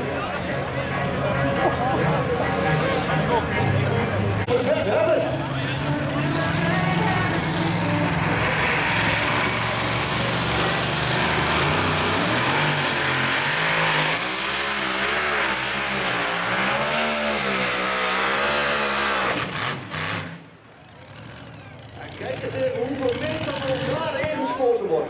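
Supercharged methanol-fuelled hot-rod pulling engine running hard under load while pulling the sled, its pitch swinging up and down as the revs surge, then cutting off suddenly about 20 seconds in.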